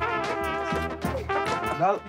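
Brass band music: trumpets and other brass horns playing held notes, with voices talking over it near the end.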